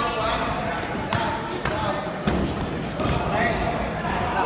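Kickboxing blows (punches and kicks) landing on gloves, headgear and shin guards: several sharp thuds about half a second apart, with voices in the background.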